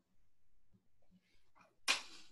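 Faint room noise, then near the end one short, sudden, loud burst with a brief hissy tail: a person sneezing.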